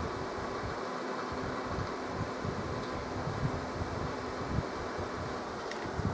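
A small square cooling fan running steadily with an even whirring hum.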